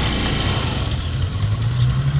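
Small motor scooter engine idling steadily, the revs rising slightly in the second half.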